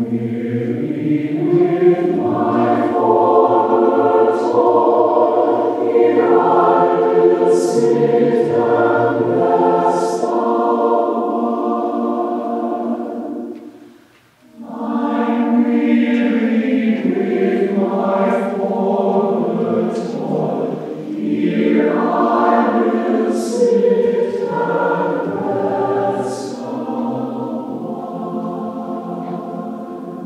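A mixed choir of men's and women's voices singing in a church. Two long phrases with a brief break about halfway through.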